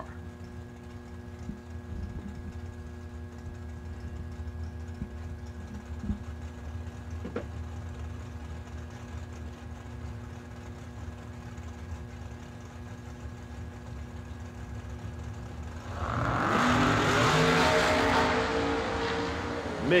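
Drag-racing cars, one a fast door car, idling steadily at the starting line, then about sixteen seconds in both launch at full throttle with a sudden loud engine run that eases off slightly near the end.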